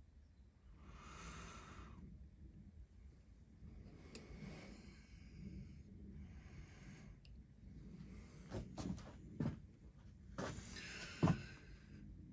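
Faint breaths through the nose, then a run of small clicks and knocks near the end as a steel digital caliper is handled against an aluminium piston and lifted off.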